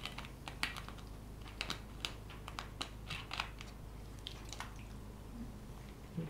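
Irregular light clicks and crackles, about a dozen over four and a half seconds, from a plastic water bottle being capped and handled.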